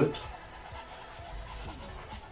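Paintbrush bristles stroked lightly across a canvas, laying down a thin acrylic base coat: a soft, scratchy rubbing in repeated light strokes.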